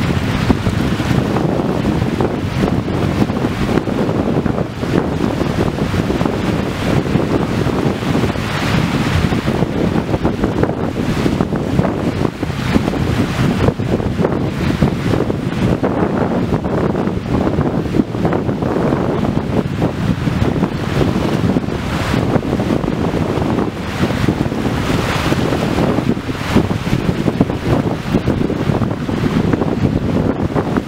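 Wind buffeting the microphone over waves washing on the shore: a loud, steady rushing with a deep rumble. It swells several times as larger waves wash in.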